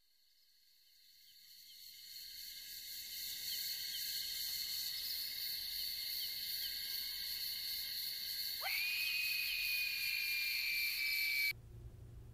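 A steady high-pitched insect-like drone with many small repeated chirps fades in over the first few seconds. About two-thirds of the way through, a tone sweeps sharply upward and holds. The whole sound cuts off suddenly about half a second before the end, leaving quiet room tone with a low hum.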